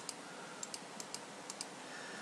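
Faint, sharp clicks of someone working a computer, about four close pairs in two seconds, over a steady low hiss.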